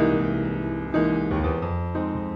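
Piano playing the song's instrumental introduction before the voice comes in: a chord struck at the start and another about a second in, each left ringing.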